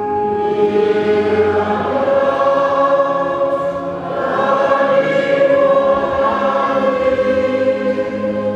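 Many voices singing a slow hymn together in long held notes, the tune moving on in phrases a few seconds long, with a short dip about halfway through.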